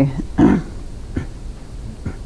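A woman coughs once, sharply, about half a second in, followed by a smaller throat sound a little after a second.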